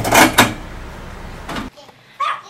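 A few sharp metal clinks and knocks as a table saw's blade is handled for a blade change, the loudest in the first half second, then the sound cuts off suddenly shortly before the end.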